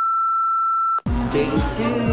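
Steady, loud test-tone beep of a colour-bar test signal, held about a second and cutting off abruptly. Then music with a heavy bass-drum beat comes in.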